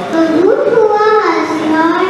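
A young child singing into a microphone: one long phrase that rises about halfway through the first second and then eases down onto a held note.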